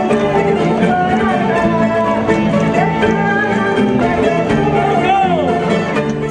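Live traditional Azorean folk music playing steadily for a folk dance.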